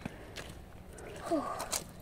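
Faint footsteps in sticky mud, a few soft steps, with a brief voice sound about a second and a half in.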